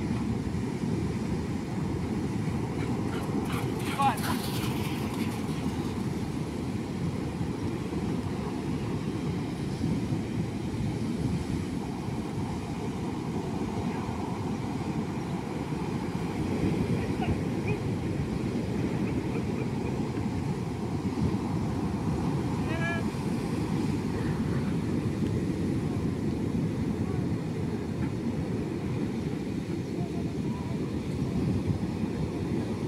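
Wind buffeting the microphone over the low rumble of breaking surf, steady throughout. Two brief pitched sounds stand out, one about four seconds in and one near twenty-three seconds.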